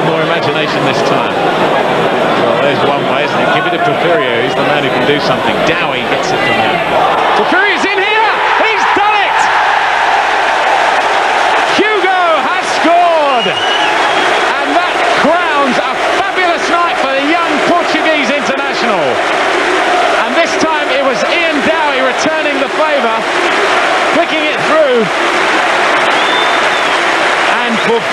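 A large football stadium crowd singing and chanting: a dense mass of many voices that keeps going without a break.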